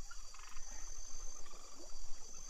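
Pond ambience: a frog giving a short, rapidly pulsed croak about half a second in, with a fainter one around a second and a half, over a steady high insect trill.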